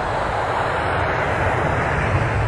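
Jet airliner engines running in flight: a steady, even noise with a low rumble underneath.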